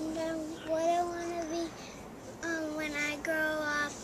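A young girl's voice humming long, level notes, four of them with short gaps, as she thinks over her answer.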